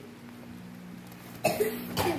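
Low steady room hum, then about one and a half seconds in a short, sudden cough from a man.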